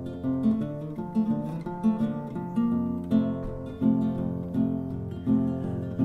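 Music played on a plucked acoustic guitar: a steady instrumental passage of picked notes.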